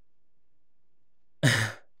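A man's short, loud sigh about a second and a half in, after a quiet pause.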